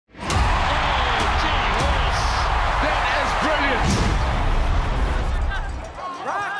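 Produced intro sting: music with a steady deep bass, cut with several sharp hits and swooshes, over a dense wash of crowd voices. The bass stops suddenly at the end.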